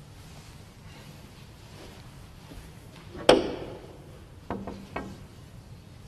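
A single sharp knock about three seconds in, with a short ringing tail, then two lighter clicks about half a second apart over a low, quiet room hum.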